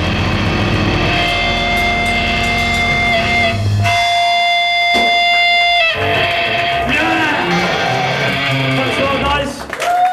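Live hardcore band's distorted electric guitars at the close of a song. A steady held guitar tone rings through the middle and cuts off about six seconds in, followed by loose, ragged guitar noise as the song winds down.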